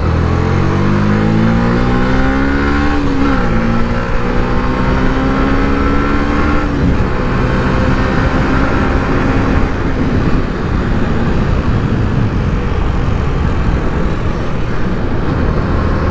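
Yamaha YZF-R125's single-cylinder four-stroke engine under hard acceleration. Its pitch climbs, drops at an upshift about three seconds in, climbs again, drops at a second upshift about seven seconds in, then holds steadier at speed.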